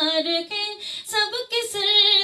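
A woman singing a naat unaccompanied into a microphone: one voice holding and bending long notes, with short breaths and hissing consonants between phrases.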